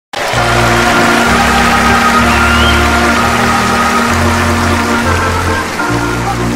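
Live music: sustained organ chords over a bass line that steps to a new note about once a second.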